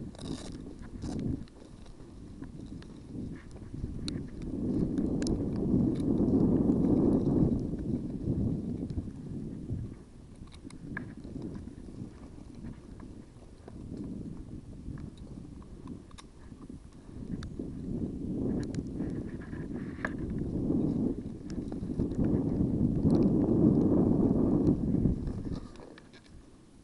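Footsteps on leaf litter and rumbling rub and handling noise on a head-mounted camera's microphone as the wearer moves. The rumble swells loud twice, for a few seconds each time, and a few sharp clicks are scattered through it.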